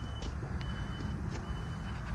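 Dodge 2500 pickup's 5.7-litre Hemi V8 idling steadily with the hood up, a low even rumble. A high-pitched beep sounds on and off several times over it.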